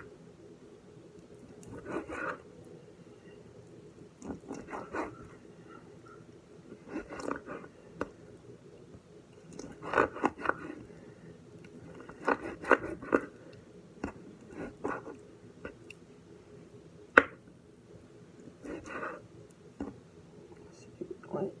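Kitchen knife slicing raw boneless chicken thigh on a wooden cutting board, in short bursts of cutting strokes every couple of seconds. One sharper knock of the blade on the board comes late on, over a faint steady hum.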